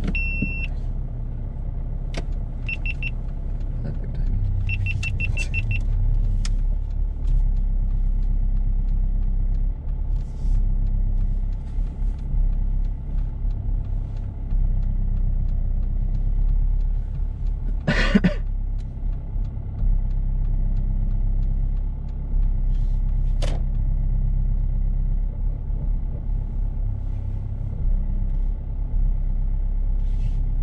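Car engine running low and steady while reversing slowly into a parking bay, with the parking sensors sounding: a single high tone at the start, then two short runs of rapid beeps a few seconds in. A brief louder noise comes past the halfway mark, then a sharp click.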